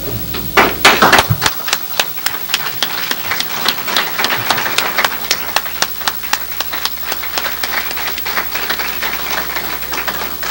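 An audience clapping: a loud burst of claps about half a second in, then a dense, steady run of hand claps.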